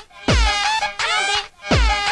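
Electronic dance music from a DJ set: repeated synth stabs that slide down in pitch, over deep kick drum hits that drop in pitch.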